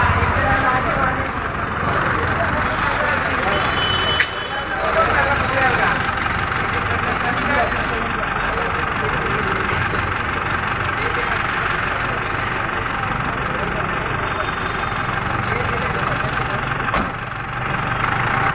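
A motor vehicle engine idling steadily amid street traffic noise, with indistinct voices of a crowd talking. There is a sharp click about four seconds in.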